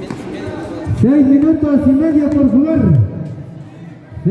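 A loud, drawn-out, wordless voice rises about a second in, wavers in pitch and holds for about two seconds before dropping away. Softer background voices come before it.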